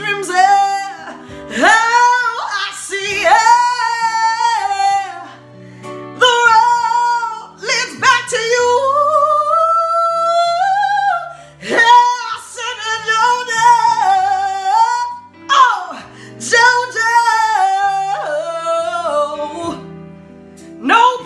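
A woman singing a slow soul ballad in long, drawn-out phrases with bending pitch. Near the middle she holds one long note that slowly rises in pitch. Low, sustained notes from the backing accompaniment sit underneath.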